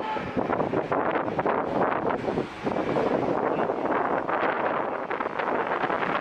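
Busy street noise with traffic going by, mixed with wind on the microphone.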